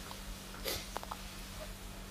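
Quiet pause in speech: a steady low electrical hum on the recording, with a faint intake of breath a little under a second in and a couple of small clicks just after.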